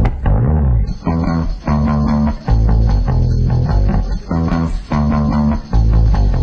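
Rock music with bass and guitar, played in chord phrases about a second long with short breaks between them.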